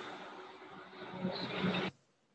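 Outdoor city street ambience with a steady hum of traffic, swelling slightly near the end before it cuts off abruptly.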